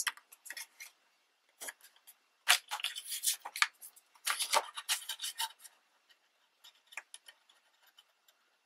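Sheets of scrapbook paper rustling and sliding against each other as they are handled, in short crisp bursts that are busiest in the middle, with a few light ticks near the end.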